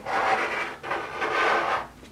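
An HO scale plastic model locomotive being turned by hand on a tabletop, rubbing and scraping on the surface in two strokes that stop just before the end.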